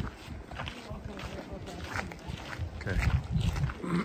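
Footsteps on a rough stone-paved street with outdoor background noise, then a man's voice saying "okay" near the end.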